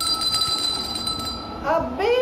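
Small yellow hand bell shaken rapidly, its clapper striking several times for a bright, ringing tone that dies away after about a second and a half.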